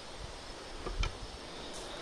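Quiet outdoor background noise, steady, with a couple of faint clicks about a second in.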